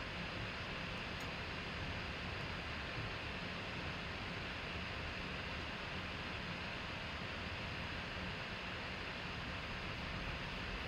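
Steady hiss of room tone and microphone noise, with no distinct sound.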